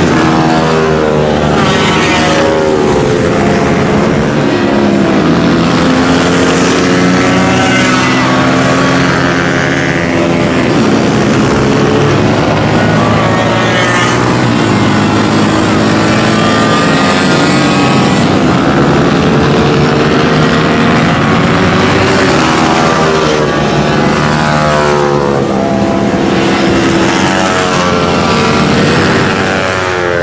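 Several minibike racing engines running hard on a circuit at once, their notes overlapping and rising and falling as the bikes accelerate out of corners, shift and pass by.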